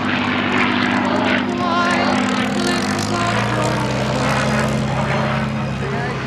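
Piston-engined Spitfire fighter flying overhead, its propeller engine running as a steady drone that settles into a deeper note about halfway through.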